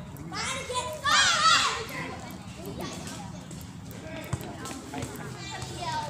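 Voices of players calling and chattering across an outdoor volleyball court, loudest a high-pitched voice with a wavering pitch about a second in. A single sharp knock a little after four seconds in.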